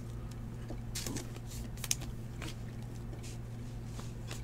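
Trading cards being handled: a few faint short ticks and slides of card stock as the cards in the stack are moved, over a steady low hum.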